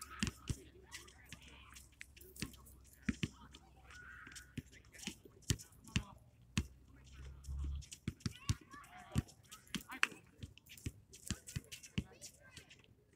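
Pickup basketball game on an outdoor court: scattered sharp thumps and clicks, irregular rather than a steady dribble, with faint distant voices of the players.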